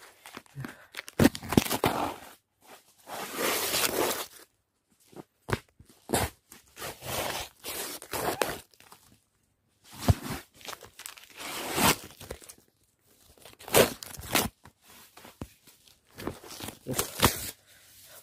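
Adhesive tape being peeled off the phone and shirt in a series of irregular ripping and crinkling noises, each up to about a second long, with short pauses between, rubbing right against the phone's microphone.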